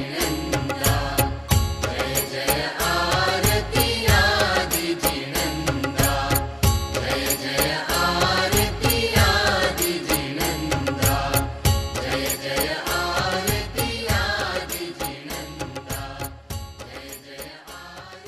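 Instrumental ending of a Jain devotional aarti song: a melody over a steady drum beat. It fades out over the last few seconds.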